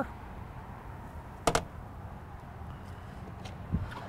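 Small hinged exterior access door on a motorhome's side clicking shut once, about a second and a half in, over a steady low background hum.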